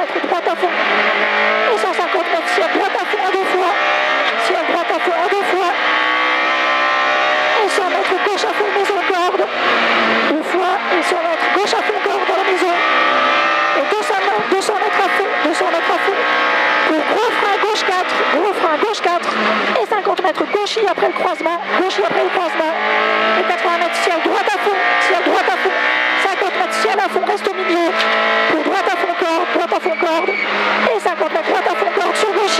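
In-car sound of a Peugeot 106 F2000 rally car's naturally aspirated four-cylinder engine driven hard, revving up through the gears again and again, its pitch climbing and falling back at each shift. Frequent sharp knocks and clatter from the road and chassis run through it.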